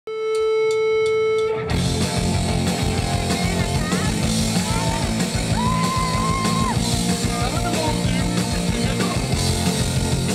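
Live rock band. A single held note sounds for about a second and a half, then the full band comes in with drums, bass and electric guitars, and a high melodic line glides over it.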